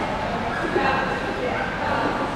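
A dog barking with short high yips while running, and a person laughing about a second in.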